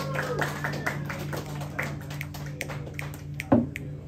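Steady electric hum from a live guitar rig left on between songs, with scattered small clicks and taps as the gear at the guitarist's feet is adjusted, and one sharper knock about three and a half seconds in.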